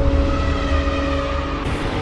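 Cinematic intro sound effect: a deep rumble with sustained tones held over it, and a new whoosh rising in near the end.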